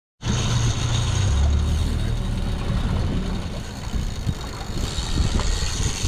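Twin Suzuki outboard motors running steadily at trolling speed: a low hum under an even hiss.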